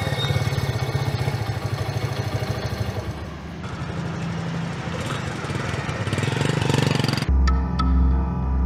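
Honda motorcycle engine running as the bike rides by, with a fast even pulsing in its note. It cuts off abruptly near the end into soft ambient music.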